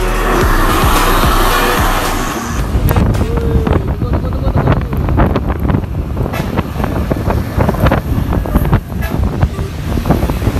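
Road noise from a moving vehicle with wind buffeting the microphone: an even hiss for the first two seconds or so, then irregular gusts and thumps over a low engine and road rumble.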